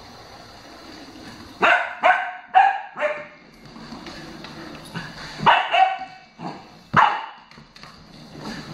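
Puppy barking at a toy hamster: seven short, sharp barks, a quick run of four and then three more.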